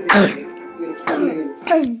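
A young girl coughing, a loud cough right at the start and another about a second in, over background music.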